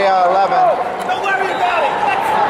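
Speech: men's voices talking, with no other distinct sound.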